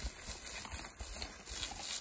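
Garden hose spraying water onto gravel: a steady hiss over a low rumble.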